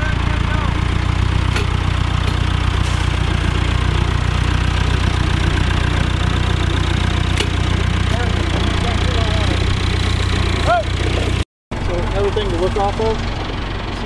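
Massey Ferguson 283 tractor's diesel engine running steadily while pulling a cone planter. It cuts off suddenly about eleven and a half seconds in, and quieter voices follow.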